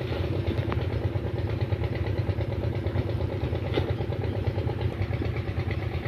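An engine idling steadily with a low, even hum.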